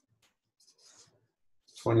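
Near silence with a few faint ticks, then a man starts speaking near the end.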